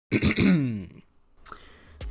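A man's short vocal exclamation whose pitch slides steadily down over about a second, followed by a brief click about a second and a half in.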